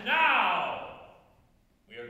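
A man's wordless, drawn-out vocal exclamation, its pitch rising then falling as it fades out within about a second, followed by a short quiet stretch.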